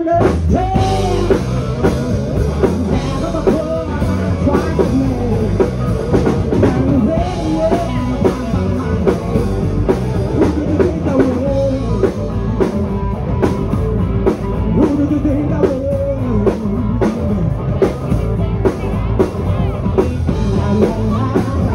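Live rock band playing at full volume: drum kit and electric guitars with a singer's lead vocal over them.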